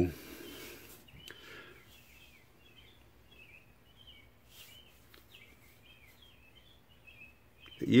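Faint chirping of small birds, scattered short calls over quiet background noise.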